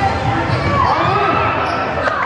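A basketball being dribbled on a hardwood gym floor during play, with voices in the hall.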